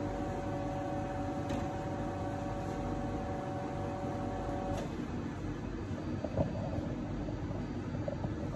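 Victoria Arduino Black Eagle Gravitech espresso machine's pump humming steadily with a two-note whine while a shot is pulled, cutting off about five seconds in as the shot ends. A faint click follows later.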